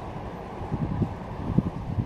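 Outdoor wind noise on the camera microphone, a steady low rumble with a few faint soft thumps.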